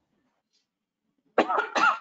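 A woman coughs twice in quick succession about a second and a half in.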